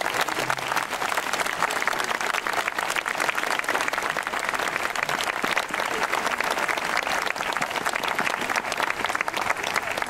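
Audience applauding: many hands clapping in a dense, steady patter.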